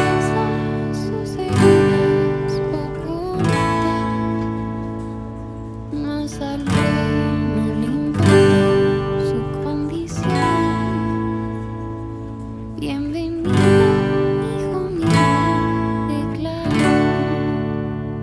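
Acoustic guitar strummed with a pick through the closing chords in D (D, G, A, with a D/F#). Each chord is struck firmly and left to ring, changing every second or two.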